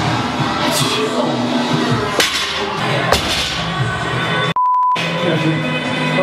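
Background music with a beat, cut off near the end by a single short steady beep, a censor bleep, with everything else silenced under it.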